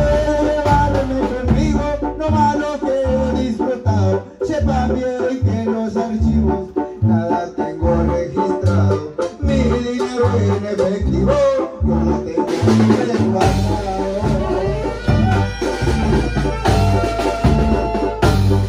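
Live banda music: an instrumental passage with brass melody lines over a steady beat of the large bass drum and low bass notes. The low bass drops out for a while in the middle and comes back strongly near the end.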